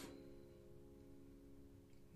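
A held piano chord ringing on faintly after being played, its sustained notes dying away to very low level.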